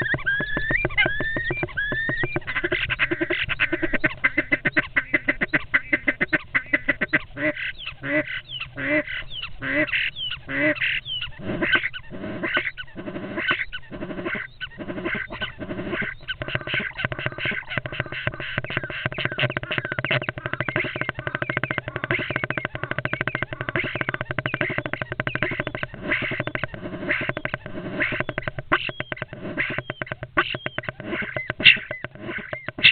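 European starlings calling inside a wooden nest box while fighting: a few gliding whistles at first, then a long run of harsh, rapid clicking and rattling calls, with a stretch of loud, evenly spaced calls around the middle.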